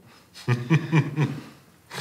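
A man chuckling: a short run of soft laughs about half a second in, then a quick breath in near the end.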